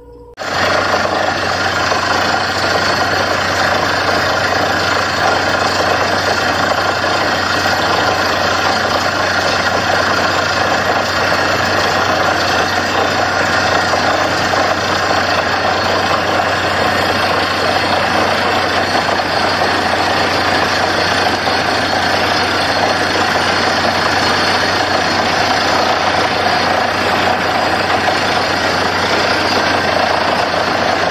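Borewell drilling rig at work, drilling into the ground: a loud, steady din of the rig's engine and drilling that comes in suddenly about half a second in.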